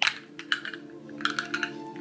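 A few light clicks and taps from objects being handled close to the microphone, over a steady background hum.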